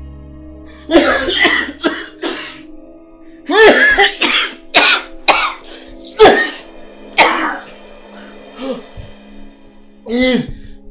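A man coughing in harsh fits with pained gasps, several bursts over the span of a few seconds, over a soft, steady background music bed.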